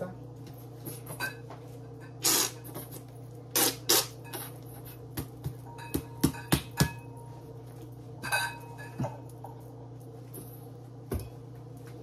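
A plastic squeeze bottle of mustard squeezed over a stainless steel bowl: several short spluttering squirts as it spits air and sauce, with a quick run of sharp clicks and taps a little past halfway.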